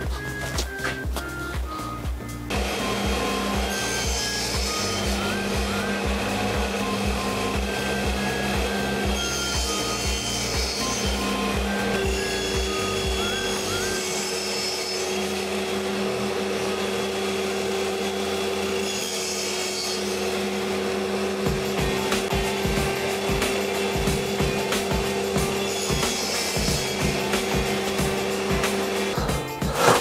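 Table saw starting up a couple of seconds in and running steadily while cutting a shallow 5 mm groove into multiplex plywood pieces in several passes, then stopping near the end. Background music plays over it.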